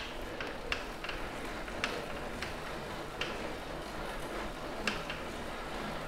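Road bike pedalled on a Wahoo KICKR 2018 direct-drive smart trainer, spinning up toward 20 mph: a faint steady whir from the drivetrain and trainer, with scattered light ticks. It is heard through a lavalier mic, which hides most of the trainer noise.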